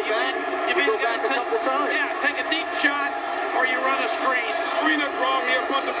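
Television sports commentary: men talking continuously, heard through a TV's speaker and sounding thin with little bass.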